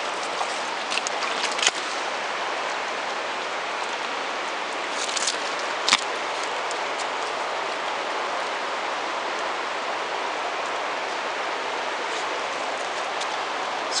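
Steady rush of river rapids, with a few light clicks.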